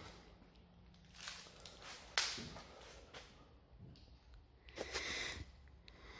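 Quiet background with a few short rustling noises, a sharp snap about two seconds in and a brief hiss near the end.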